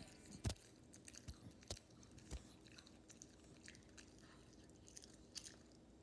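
Faint chewing and crunching of a small dog eating a treat: a few short, sharp crunches spread through a near-quiet background.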